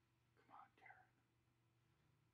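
Near silence: room tone with a low steady hum, and a faint whispered voice briefly about half a second in.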